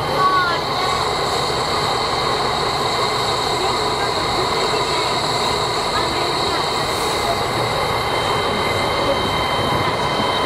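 C57 steam locomotive standing in steam, heard close beside its cab: a steady hiss and hum with a few thin, steady high tones running through it. A person's voice is heard briefly at the start.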